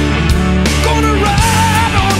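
Rock song with a full band: drums and bass keep a steady beat, and about halfway through a high lead line with a wide vibrato comes in over the top.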